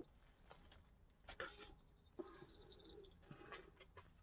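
Near silence, with a few faint soft taps and a little rustling from handling a candle jar over bubble wrap.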